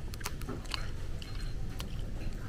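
Chopsticks clicking and tapping against a ceramic plate while picking apart grilled fish: a series of short, sharp clicks over a steady low background hum.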